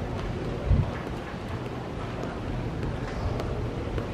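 Wind buffeting the camera microphone, heard as an uneven low rumble with one brief louder thump just under a second in.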